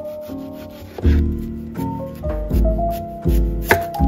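Chef's knife cutting through a tomato and a raw sweet potato on a plastic cutting board, with one sharp knock of the blade on the board near the end. Soft background music with a steady bass line plays throughout.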